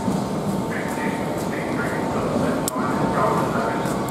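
Railway station platform ambience: a steady din with background chatter of people and a constant high-pitched hum running underneath.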